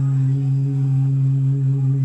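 A man's voice holding one long, steady note in Quran recitation (tilawah), a drawn-out vowel sustained on a single pitch.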